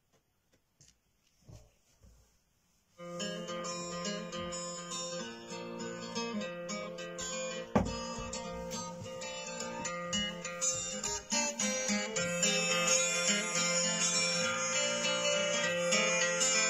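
Instrumental intro of a country backing track, plucked strings over a steady low bass line, coming in about three seconds in after a few faint handling knocks. One sharp click cuts through the music about halfway.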